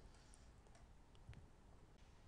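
Near silence, with a few faint clicks around the middle.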